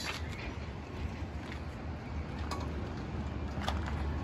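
Quiet background noise: a low steady rumble with a couple of faint clicks.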